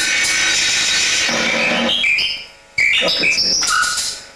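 A live band playing on stage, heard as a loud, heavily distorted recording. The sound drops out briefly about two and a half seconds in and comes back with short high tones that jump up and down in pitch.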